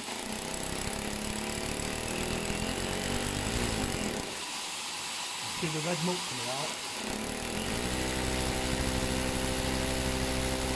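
Hammer drill with a masonry bit boring through plaster into brick, running steadily alongside a vacuum cleaner that draws off the dust. The drill's low drone drops away for a few seconds in the middle. It comes back steadier near the end as the bit hammers into solid red brick rather than the mortar joint.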